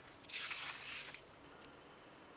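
A plastic stencil being peeled up off a layer of wet Golden light moulding paste on watercolour paper: one short peeling rasp of about a second.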